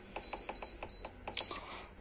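Dishwasher control-panel buttons pressed several times in quick succession, each press a small click, most with a short high beep, while a 15-minute quick program is selected.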